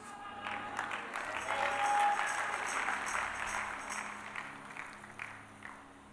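Congregation applauding, swelling about two seconds in and dying away near the end, over soft sustained background music.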